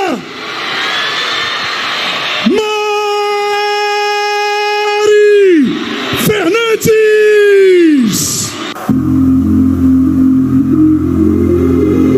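Amplified stage announcer's voice giving long drawn-out shouts, one held steady for about three seconds, over a cheering crowd. About nine seconds in, live music with a steady bass beat starts up.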